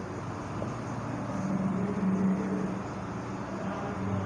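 A steady low motor hum, like a vehicle engine, that swells about halfway through and then eases off.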